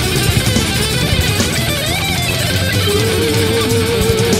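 Instrumental passage of a Thai rock song, with no singing: electric guitars over bass and a steady beat, with bent notes in the middle. About three seconds in a lead instrument holds one long wavering note.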